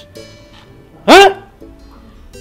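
A single loud dog bark about a second in, over soft background music.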